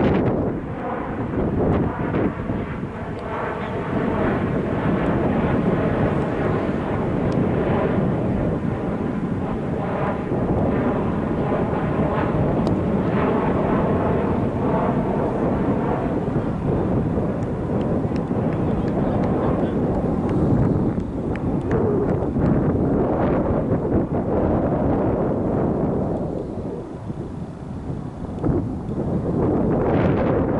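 Wind buffeting the camera microphone: a continuous low rumbling rush that eases briefly near the end.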